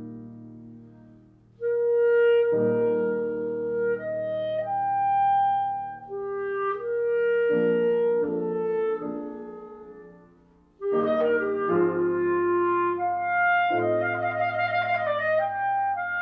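Clarinet with piano accompaniment playing classical music: after a piano chord, the clarinet holds long notes over piano chords, then about eleven seconds in breaks into quicker running notes.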